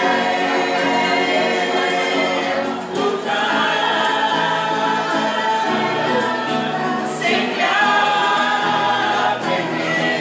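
A choir singing in long sustained phrases, with short breaks between phrases about three and seven seconds in.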